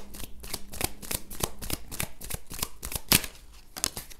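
A deck of cards being shuffled by hand: a rapid, uneven run of crisp card clicks, with one louder click about three seconds in.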